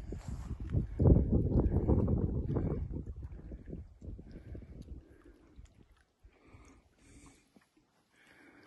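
Low rumbling buffeting on a handheld phone's microphone, loud for the first three seconds and then fading to faint scattered sounds.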